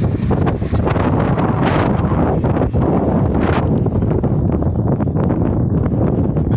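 Wind buffeting the microphone: a loud, steady low rumble with a few stronger gusts.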